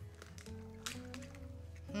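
Soft background music with held notes that change pitch every half second or so. A few faint sharp clicks come through it in the first second, from an egg being cracked over a glass mixing bowl.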